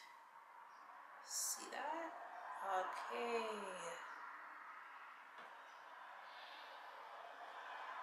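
A woman's breath, then a few seconds of soft wordless vocal sounds, rising and falling in pitch, ending about four seconds in; the rest is quiet room tone.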